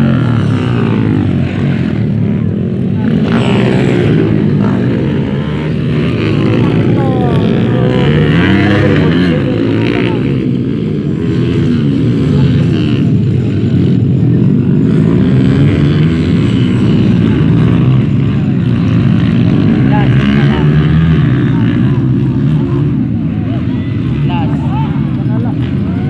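Dirt-bike engines racing past on a dirt track, revving hard with their pitch rising and falling as the riders accelerate and shift.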